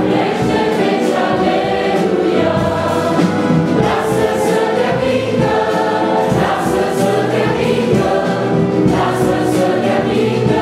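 A church choir of many voices singing a Christian hymn together, with instrumental accompaniment, in sustained notes.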